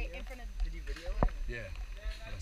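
Indistinct talking from a few people close by, over a steady low rumble on the microphone, with one sharp click a little past the middle.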